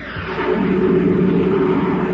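A sustained roaring sound effect on an old radio transcription, swelling in quickly and then slowly fading.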